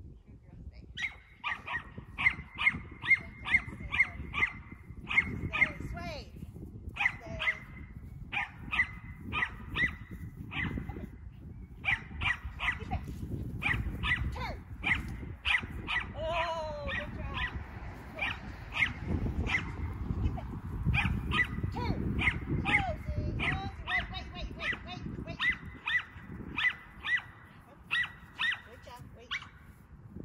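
A dog barking over and over in quick runs of high-pitched barks, about three to four a second with short pauses between runs, over a low rumble.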